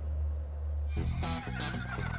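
A horse whinnying, starting about a second in, over background music.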